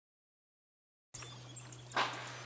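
Silence for about the first second, then a five-speed electric trolling motor pushing the boat along with a steady low hum, water lapping at the hull beneath it. A brief sharp knock near the end.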